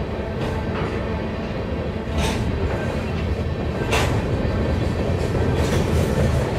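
Covered hopper cars of a freight train rolling over a short steel railroad bridge: a steady rumble of wheels on rail, with a sharp clack of wheels over a rail joint every second or two.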